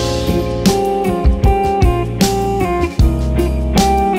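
Instrumental stretch of a neo-soul/funk band with no vocals: electric guitar playing over bass and drum kit with a steady beat.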